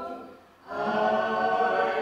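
A small group of voices singing a hymn to a classical guitar; a held note fades away, there is a short breath-pause, and a new phrase begins just under a second in.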